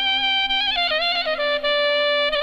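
Wedding band music: a reedy wind-instrument melody holds a long note, falls in a quick run of notes about a second in, and settles on a lower held note over a steady low drone.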